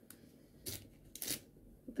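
Rustling and handling noise from skeins of yarn being taken down and picked up, with two short scratchy rustles, the second the longer.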